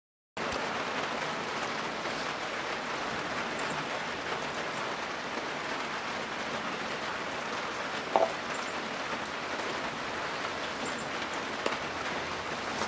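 Steady, even outdoor background hiss, with one short sharp sound about eight seconds in and a faint click near the end.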